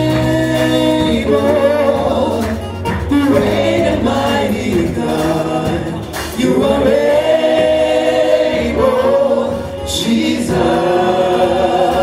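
Live gospel worship song: a female lead and male backing singers sing in harmony through the PA in phrases a few seconds long, over band accompaniment with a steady low bass.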